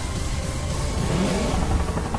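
Dense movie-trailer sound mix: an engine-like sound effect that rises and falls in pitch about a second in, laid over the trailer's music.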